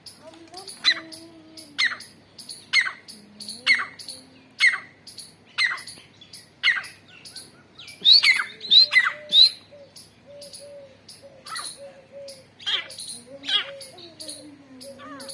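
Grey francolins calling: short, sharp, falling notes repeated about once a second, with a quicker run of louder calls about eight to nine and a half seconds in.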